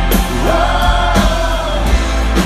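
Live rock band playing loudly, with sung vocals held over guitars, bass and drums, the drum hits cutting through every half second or so.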